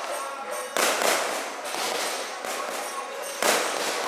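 Fireworks bursting overhead: two sharp bangs, one under a second in and one near the end, each trailing off in a long fading rumble.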